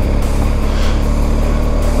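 BMW R1250GS Adventure's boxer-twin engine running steadily under way.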